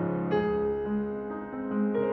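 Slow piano music of sustained notes, with a new chord struck about a third of a second in and another near the end.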